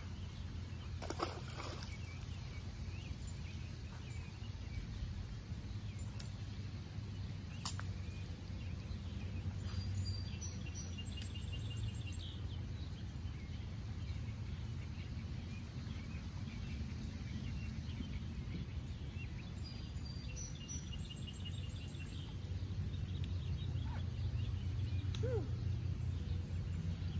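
Outdoor ambience by a pond: a steady low rumble with birds chirping now and then. About a second in there is a short splash as a bass is let back into the water.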